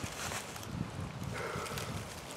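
Soft rustling of dry leaves and weeds with light, irregular handling knocks as a dead whitetail buck's head is held and shifted by its antlers.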